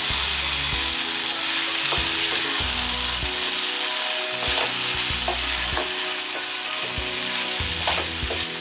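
Tuna chunks and onions sizzling in a nonstick pan while a wooden spatula stirs them, a steady hiss with frequent knocks and scrapes of the spatula against the pan.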